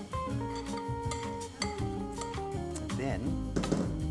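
Background guitar music with long held notes, with a few light clinks of a whisk and spoon against a glass bowl and a wok.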